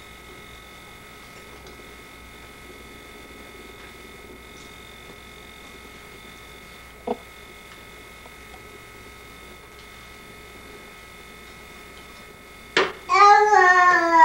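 Quiet room tone with a faint steady hum and one brief knock about halfway through. Near the end a baby starts a loud, drawn-out, wavering vocalization, like sing-song babbling.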